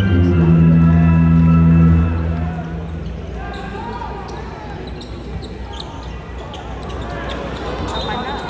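Arena PA music with heavy bass plays loudly and stops about two seconds in. After it, a basketball being dribbled on the hardwood court and the crowd talking fill the rest.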